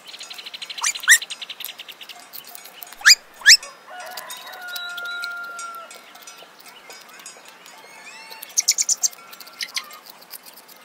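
Birds calling: a buzzy rapid trill at first, then loud short whistles that sweep upward, a held note midway, and a quick run of sharp chirps near the end.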